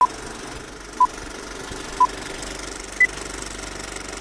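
Vintage film-leader countdown sound effect: a short beep once a second, three at the same pitch and a fourth one higher, over the steady clatter of a film projector running.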